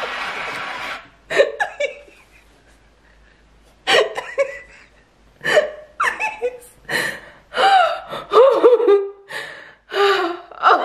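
A woman laughing uncontrollably in short bursts with gasping breaths, after a quieter lull in the middle. A steady noise runs underneath for the first second and stops abruptly.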